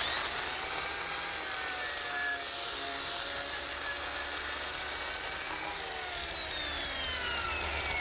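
Electric right-angle grinder with a wire wheel scrubbing rust off a steel shovel blade: a steady high motor whine over scratchy brushing noise. Near the end the whine falls steadily as the grinder winds down.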